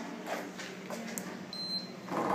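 Wall-mounted access-control card reader giving a single short, high beep about one and a half seconds in as a card is held up to it, over faint knocks and handling noise.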